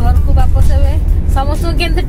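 Voices talking inside a moving vehicle's cabin, over a steady low rumble from the vehicle.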